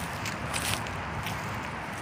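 Footsteps walking across grass and dirt, with a few soft rustles about half a second in over a low steady rumble.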